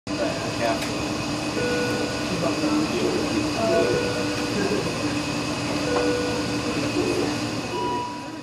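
Steady, noisy rumbling ambience with indistinct voices and a low hum, crossed now and then by short steady tones.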